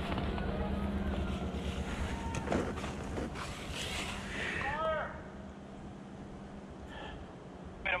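Faint distant voices over a low steady hum, with a few soft ticks; it goes quieter about five seconds in.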